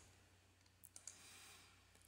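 Near silence with a couple of faint computer mouse clicks about a second in, followed by faint hiss.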